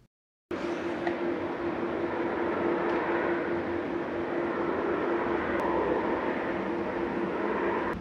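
A steady machine-like hum with a constant low tone, starting abruptly after a brief moment of dead silence.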